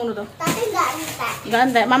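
Only talking: voices in a small room, a child's voice among them.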